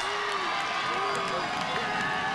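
Steady crowd hubbub at a stadium field, with faint, distant shouted voices rising and falling.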